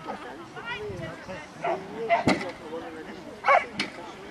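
A dog barking a few short, sharp times while running an agility course, the loudest bark about three and a half seconds in, over voices in the background.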